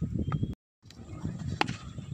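Wind rumbling on a phone microphone outdoors, with a couple of short knocks like footfalls on hard dry ground early on. The sound cuts out completely for a moment, then one sharp knock comes near the end.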